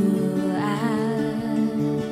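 Worship band music with sustained chords, and a voice holding a wavering note about a quarter of the way in without clear words.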